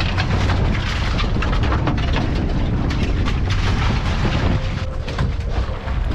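Wind rumbling on the microphone over the wash of the sea, steady throughout, with scattered short knocks.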